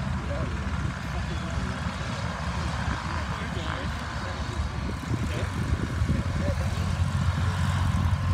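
Light propeller planes' engines running in the distance as they taxi, with a steady low rumble that grows a little louder in the second half.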